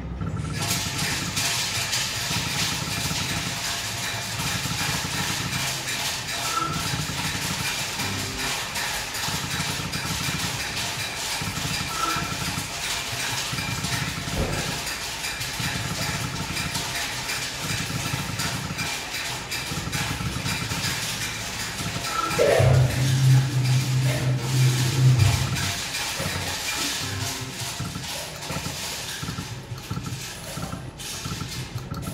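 Book of Ra Magic slot machine's electronic game sounds as the reels spin round after round, with short chimes now and then. About three-quarters of the way through, a loud, steady low tone sounds for about three seconds.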